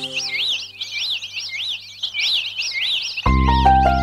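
Bird chirps, quick repeated rising-and-falling whistles, in the intro of a Malayalam folk song recording. The instrumental backing drops away after about half a second and comes back in with bass a little after three seconds in.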